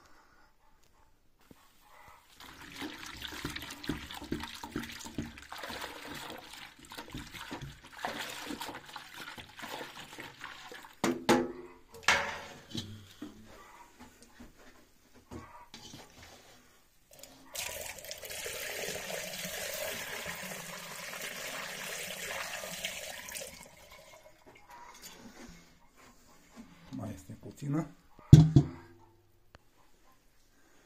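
Red wine mixed with bentonite poured from a metal bucket through a funnel into a glass demijohn of wine. The liquid pours in stretches, with a steady pour of about six seconds in the second half. Two sharp knocks come a little before the middle, and these are the loudest sounds.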